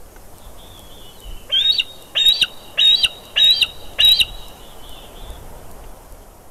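Juvenile bald eagle calling: a run of five high chirping calls about half a second apart, starting about one and a half seconds in, over a faint outdoor hiss.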